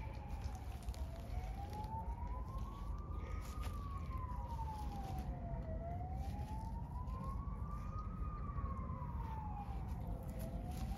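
Emergency vehicle siren in a slow wail, its pitch rising and falling about every two and a half seconds, over a steady low rumble.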